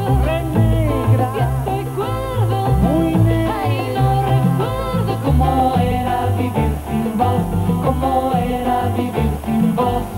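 Recorded band music: a sung vocal line over electric bass, drums and keyboards. The singing gives way to a steadier keyboard melody about halfway through.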